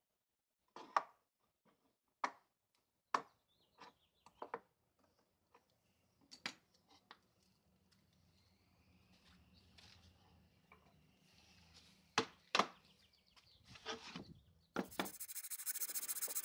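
Hand plane taking short strokes across the face of a wooden blank to true it up: about eight separate scrapes, irregularly spaced. A steady hiss starts abruptly near the end.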